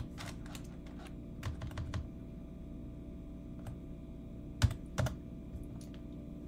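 Computer keyboard typing in short scattered runs of key taps, with two louder clicks a little past the middle, over a steady low hum.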